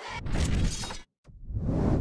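Broadcast transition sound effect: a sudden hit that rings for about a second, then a whoosh that swells louder and cuts off abruptly as the picture wipes to the commercial break.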